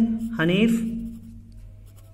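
Pen writing on notebook paper, a light scratching that stands out in the quieter second half, after a single spoken word.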